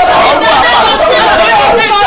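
A man's and a woman's voices speaking loudly at the same time, overlapping without pause.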